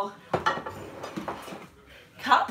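A ceramic mug and dishes handled on a kitchen benchtop: a sharp knock just after the start, then a few softer knocks.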